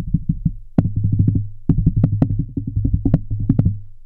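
Handling noise through the Behringer D2 Podcast Pro dynamic microphone as fingers work rapidly at its foam windscreen. It comes through as a fast, even run of low thumps, about ten a second, with a couple of brief breaks and a few sharp clicks.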